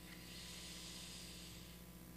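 Faint exhaled breath near the microphone: a soft hiss lasting about a second and a half, over a low steady hum.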